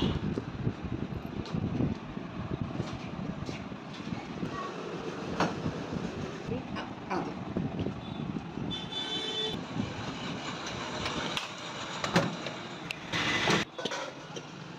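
Street traffic noise, a steady rumble of passing vehicles with scattered knocks and clicks. A brief high-pitched tone sounds about nine seconds in.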